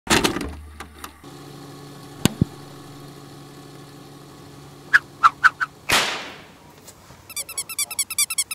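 VHS-tape-style intro sound effects: a loud burst at the start, then a steady electrical buzz with a couple of clicks and four short beeps, a swoosh of static about six seconds in, and rapid digital glitch stuttering near the end.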